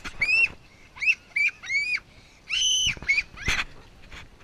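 A young child's high-pitched squealing laughter: a run of short shrieks, with one held longer about halfway through.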